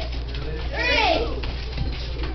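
Voices of onlookers, with one high call that rises and falls in pitch about a second in, over a steady low hum.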